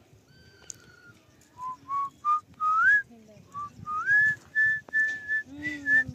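A person whistling a short tune. A few short notes step upward in pitch, followed by two rising slides and several held notes near the end.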